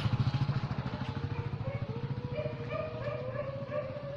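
An engine running at idle with a rapid low throb. From about a second and a half in, a long drawn-out animal call rises slowly over it.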